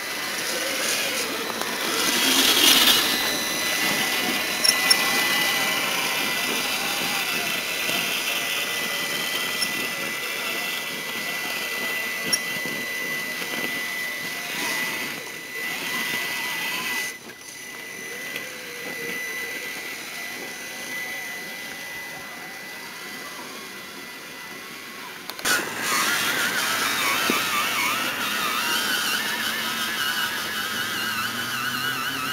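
Electric motor and gearbox of a 1/6-scale RC Jeep whining as it crawls, with a steady high tone. The sound drops abruptly about 17 seconds in and comes back louder around 25 seconds in.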